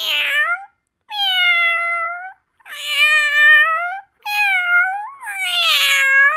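A domestic cat meowing over and over: five meows in a row. Most last over a second, and each sags in pitch and then rises again at the end.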